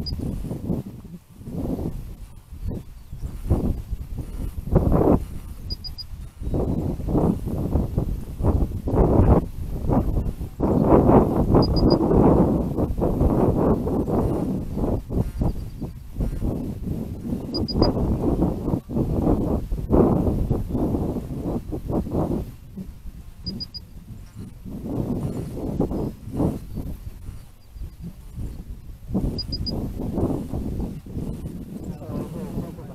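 Wind buffeting an onboard rocket camera's microphone in uneven gusts. A faint double beep repeats about every six seconds from the rocket's dual-deploy flight altimeter, the status beep of armed electronics waiting on the pad.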